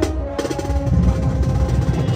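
Youth marching band playing: a held brass chord breaks off about half a second in, and the drum line carries on with dense, steady drumming.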